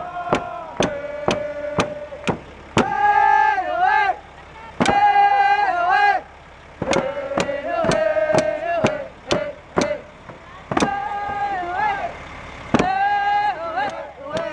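Hand drums beaten in a steady beat, about two strokes a second, under voices singing a song in long held notes that fall away at the end of each phrase.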